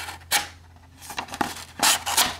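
A sheet of paper being stabbed and sliced by a small pocket-knife blade: three short papery tearing sounds, the last one the loudest, near the end.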